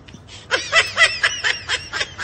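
A person laughing in a rapid, high-pitched giggle, starting about half a second in, in quick repeated bursts.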